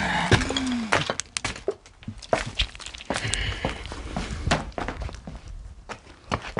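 Footsteps and irregular knocks and clatter from a person walking while carrying a camera and flashlight. A short squeak bends in pitch in the first second.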